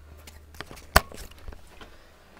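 A single sharp knock about a second in, with a few fainter clicks and a low steady hum.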